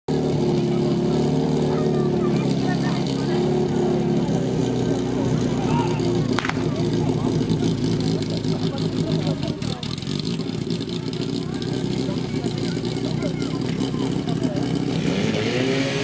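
Portable fire pump's engine running loud and steady, then working rougher and harder after a single sharp crack about six seconds in, when the attack starts and the pump is put under load.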